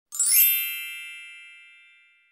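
Sparkle-and-chime sound effect for a logo intro: a brief rising shimmer, then one bright chime that rings on and slowly fades away.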